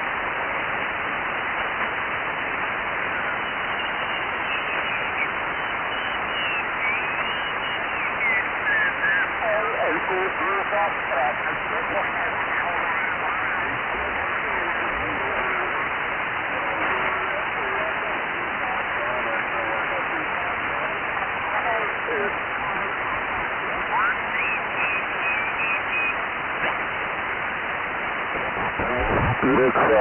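RS-44 satellite's linear transponder downlink heard on a single-sideband receiver: steady receiver hiss with faint, garbled voices and tones that slide in pitch as the receiver is tuned across the passband.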